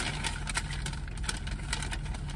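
Steady low hum of a car's engine heard from inside the cabin.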